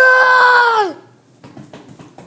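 A child's voice giving one long cry, held steady for about a second and dropping in pitch as it ends: a scream voiced for a toy soldier that has been shot.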